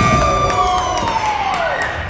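Voices cheering and shouting in a gymnasium at the end of a basketball game, with one long high call that falls in pitch.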